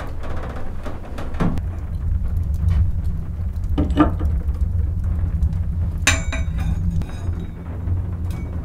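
A few sharp knocks, about a second and a half and four seconds in, then a ringing metallic clink about six seconds in, over a steady low rumble.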